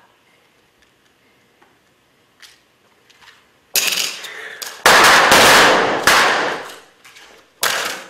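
Rapid volley of blank gunshots from several prop pistols, starting suddenly about four seconds in, with the shots ringing into each other in the room, and one more shot near the end.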